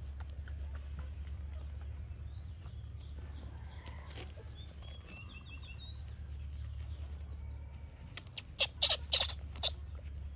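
A disposable diaper being handled and unfolded: soft rustling, then a quick run of four or five sharp crackling rips near the end. A steady low hum and a few faint chirps sit underneath.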